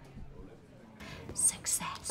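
A pause in the dialogue: quiet room tone for about a second, then soft breathy, whispery voice sounds in the second half leading into speech.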